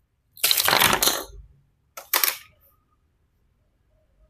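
Small acrylic standee pieces handled and clattering onto a desk, a rattling rustle lasting about a second. About two seconds in there are two sharp clicks close together as a piece is set down.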